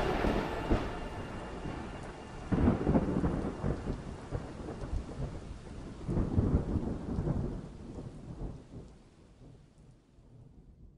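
Thunder rolling over steady rain, with long rumbles that swell about two and a half and six seconds in, then fade away.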